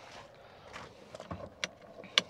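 A few faint clicks and a soft knock from a pickup truck's open driver door and cab as the hood release is reached for, with the sharpest click about one and a half seconds in.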